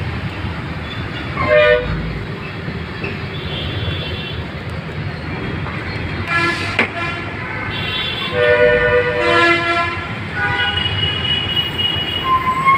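Steady low rumble of a city bus, engine and road noise, heard from inside, with vehicle horns honking in the traffic: a short honk about a second and a half in, longer overlapping horn blasts from about eight to ten seconds, and another horn near the end.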